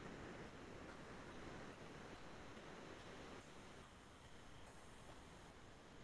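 Near silence: a faint, steady hiss of room noise.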